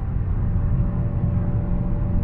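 Dodge Challenger SRT's V8 cruising at highway speed, heard from inside the cabin: a steady low rumble of engine and road noise with a faint steady hum.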